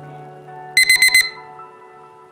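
Electronic countdown timer alarm: four quick high-pitched beeps about a second in, marking the presentation timer reaching its limit, over soft background music.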